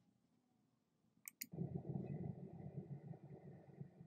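Two sharp clicks a fraction of a second apart, then the low, fluctuating rumble of outdoor night-time city ambience picked up by a phone's microphone.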